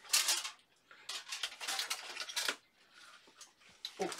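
Handling noises as dishes and utensils are picked up and moved: a short scrape at the start, then a run of quick rustling and clattering strokes for about a second and a half.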